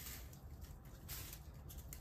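Faint, soft rustling of a dry shed snake skin as it is drawn up out of the enclosure with tongs, with a few brief crackles, the clearest just after a second in.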